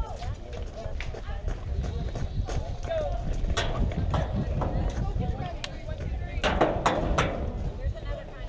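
Indistinct voices of people talking, under a loud, uneven rumble of wind on the microphone. A cluster of sharp smacks comes about six and a half seconds in.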